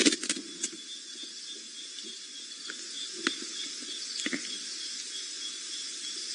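Night ambience by a small river: a steady, high, pulsing trill over a constant hiss, with a few faint clicks.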